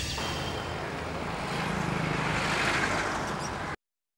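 A rushing, whoosh-like transition sound effect of the kind used in a TV drama, swelling slightly before it cuts off abruptly just before the end.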